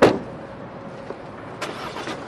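An Audi sedan's door slams shut, then the car's engine runs quietly. A couple of lighter knocks come near the end.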